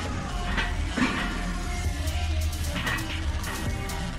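Music with a heavy, steady bass.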